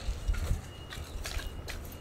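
A few faint, irregular footsteps over a steady low rumble.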